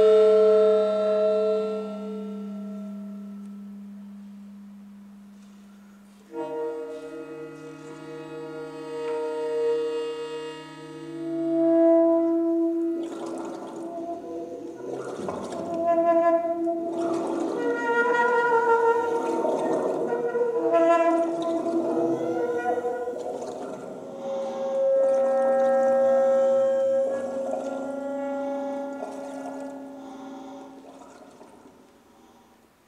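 Experimental music for saxophone and other air-driven instruments with live electronics. Layered sustained tones overlap, and the first chord fades slowly before a new one enters about six seconds in. From about thirteen seconds the texture grows denser and noisier, with short breaks, settling back into held tones near the end.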